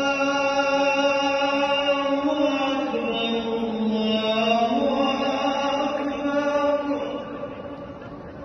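A single voice chanting an Islamic recitation in long held notes that shift slowly in pitch, fading out near the end.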